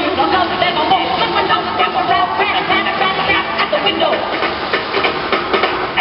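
Water jets of a musical fountain rushing and hissing, mixed with a crowd talking and music playing.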